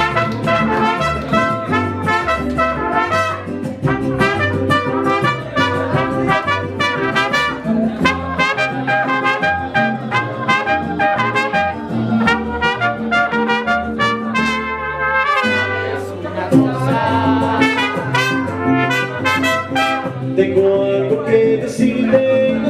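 Mariachi band playing an instrumental passage, with trumpets leading the melody over a steady bass line. The bass drops out briefly about fifteen seconds in, then the band carries on.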